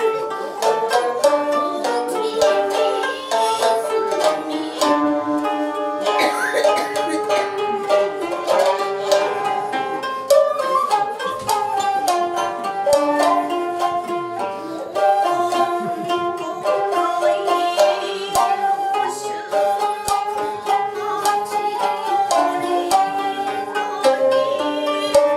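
Japanese sankyoku chamber music: koto and shamisen plucking a fast, busy melody, with long held notes sounding under the plucked strings.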